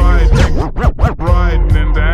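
Slowed-down, screwed-and-chopped hip hop track with a heavy bass line, with vocal sounds dragged up and down in pitch in a DJ scratch through the middle.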